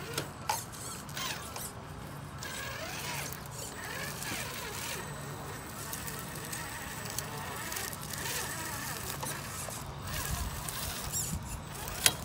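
Traxxas TRX-4 RC rock crawler's electric motor and geared drivetrain whining at crawl speed in short on-and-off pulses as it creeps over rocks, with a couple of clicks of tyres and chassis against stone early on.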